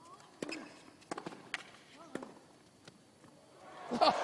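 Tennis ball struck by rackets and bouncing on the hard court during a rally: a handful of sharp pops about half a second apart. Near the end, crowd noise begins to swell.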